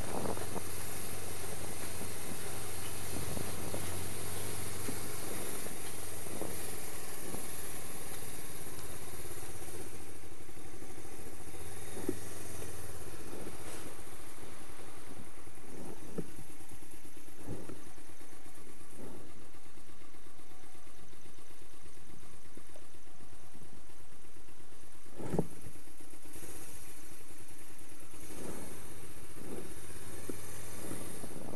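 Motorcycle engine running at low speed under steady wind noise on the helmet-mounted microphone, with scattered short thumps, the loudest a few seconds before the end.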